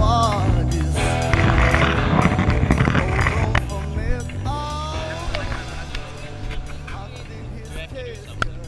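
Background music with a steady repeating bass line, fading somewhat over the second half.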